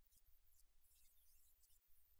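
Near silence: a faint low electrical hum.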